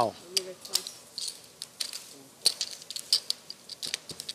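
Poker chips clicking against each other in quick, irregular sharp clicks, with faint voices murmuring underneath.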